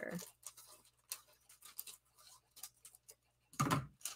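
Scissors snipping through a thin sheet of metallic craft foil, with small crinkles and rustles of the foil, then a louder thump near the end.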